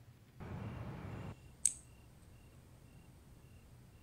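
A soft rustle for about a second, then a single sharp snip of a nail clipper.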